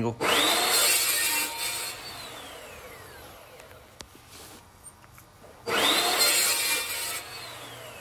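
Evolution 14-inch metal-cutting chop saw with a 66-tooth blade making two short cuts through metal stock. Each cut starts with the motor whining up to speed, runs loud for about a second and a half, then the motor winds down with a falling whine. The second cut comes about five and a half seconds after the first.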